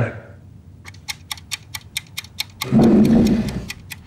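Clock-like ticking from a trailer's sound design, about four sharp ticks a second, keeping a tense pulse. About three seconds in, a deep low hit swells for about a second over the ticking.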